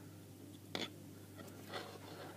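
Faint handling noises as a capacitor's leads are worked into a small circuit board by hand, with one short sharp click a little under a second in.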